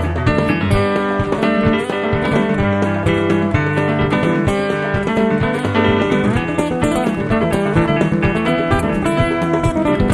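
A band plays an instrumental passage between sung verses, led by guitar over bass, with no singing.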